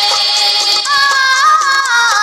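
Music of a Hindi devotional prayer song: a held melodic line, with a new sustained note entering about a second in and stepping in pitch near the end.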